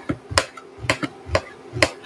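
A kitchen knife chopping pineapple in a plastic container: about five sharp cuts, roughly two a second, each a crisp knock as the blade goes through the fruit and meets the container.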